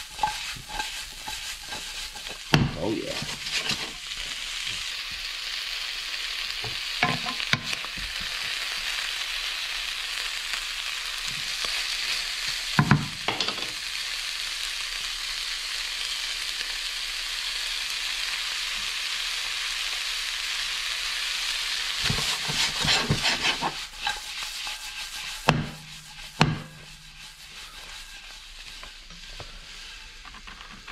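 Chopped peppers, onions and lobster meat sizzling in a hot non-stick frying pan, with a few sharp knocks as the pan is tossed and stirred. The sizzle drops away in the last few seconds.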